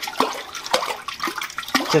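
Water sloshing and splashing in a quench bucket as a hot 1095 steel hammer head is swirled through it with tongs, hardening it. The stirring keeps the air bubbles forming on the hot steel from clinging to its surface.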